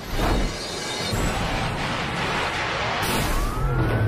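Action-film soundtrack of the Tumbler Batmobile: a dense wash of vehicle and impact noise with music under it. A surge of hiss comes about three seconds in, and a whine rises in pitch near the end.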